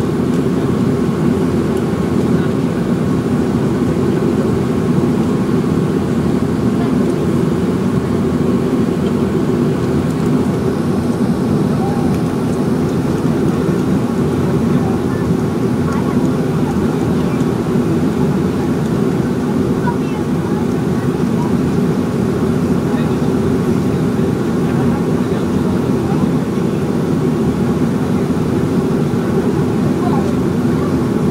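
Boeing 737 jet engines at low taxi power, heard inside the passenger cabin as a loud, steady, low hum that holds level throughout.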